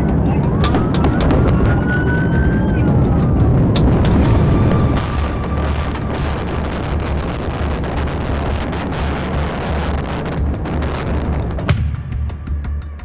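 Police car siren wailing, rising and then falling in pitch in the first few seconds, over engine and road noise from the pursuing cruiser at speed.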